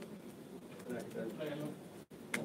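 A low, indistinct voice murmuring briefly about a second in, over the hum of a quiet room.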